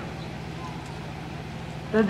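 Steady low hum and hiss of background noise in a brief pause between a man's words, with his voice returning right at the end.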